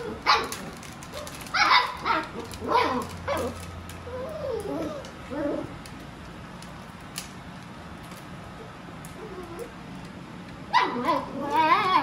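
Six-week-old Afghan Hound puppies barking and yipping in play. A few sharp barks come in the first few seconds, then some wavering whines, a quieter stretch, and a burst of high yips near the end.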